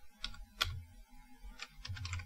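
Computer keyboard keys being typed: a few separate keystrokes spread over two seconds.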